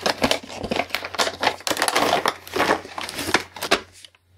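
A cardboard accessory box being opened and handled, with a dense, irregular run of crinkling and scraping from its packaging.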